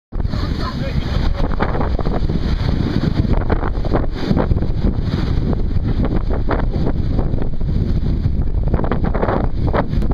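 Wind buffeting the microphone aboard a sailing yacht under way in a fresh breeze, with the sea rushing past the hull; a voice comes through faintly now and then.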